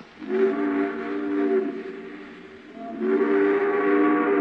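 Steam locomotive chime whistle sounding two long blasts, each a steady chord of several tones, the second starting about three seconds in.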